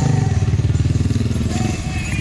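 Engines of a Jeep Cherokee and a Ford Bronco II running at idle: a steady low engine note with a fast, even firing pulse that dips briefly near the end.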